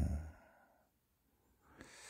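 A spoken word trails off, then quiet, then a soft breath near the end, just after a faint click.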